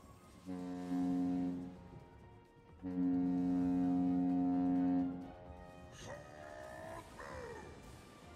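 Online slot game sound effects as a bonus round starts: two long, low, horn-like blasts, the second longer, then a shorter sweeping tone near the end.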